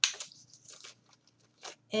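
Paper and clear plastic rustling and crinkling as a letter card is pushed into a paper-plate puppet's see-through plastic belly: a sharp rustle right at the start, then a few short scrapes.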